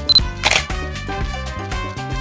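A camera shutter clicks about half a second in, just after a short high beep, over background music with a steady beat.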